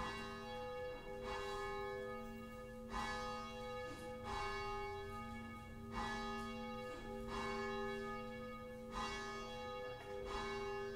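Church bell ringing, its strokes coming in pairs about every three seconds, each stroke ringing on into the next.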